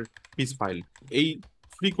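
Computer keyboard typing: light, quick key clicks, mixed with a voice speaking.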